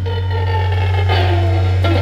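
Live band playing a song: electric guitars ringing over a held low bass note, with no drum hits in these two seconds.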